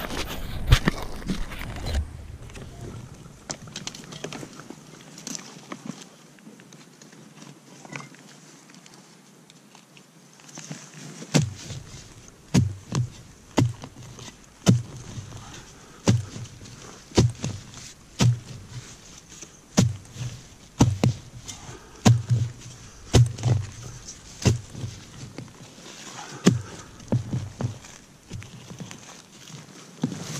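Hand digging tool chopping into root-filled forest soil, a run of sharp strikes about one or two a second. It starts after about ten quieter seconds, digging down to a deep metal-detector target.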